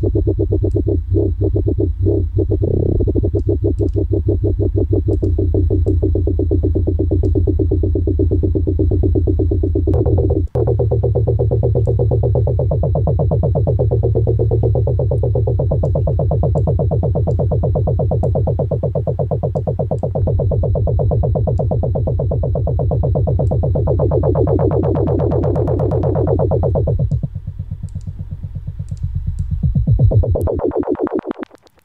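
A synth bass sample played in Ableton Live's Simpler, pulsing rapidly as a sixteenth-note LFO modulates its volume, filter and pitch while the filter cutoff is turned. It stops for a moment about ten seconds in, brightens with a rising sweep near the end, then turns quieter.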